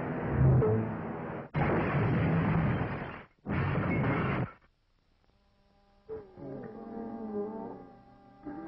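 Cartoon soundtrack effects: a dense noisy rush with a loud low boom about half a second in, then two more noisy rushes that each cut off abruptly. After a short gap of near silence, orchestral music with wavering tones begins about six seconds in.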